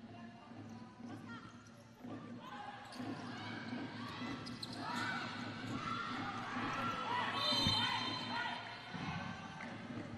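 Futsal play on an indoor court in a large, echoing hall: many short squeaks from shoes on the court floor, ball knocks, and players' voices. A brief high-pitched tone comes about three quarters of the way through.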